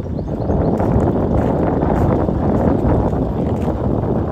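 Wind buffeting the microphone: a loud, steady rumble that builds over the first half second.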